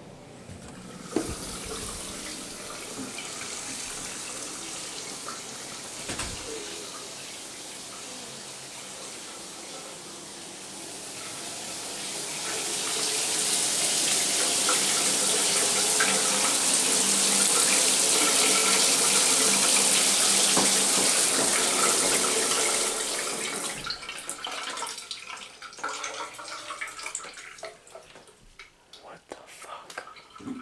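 Water running steadily from a bathroom faucet, growing much louder partway through and then cutting off a few seconds before the end, leaving scattered small sounds.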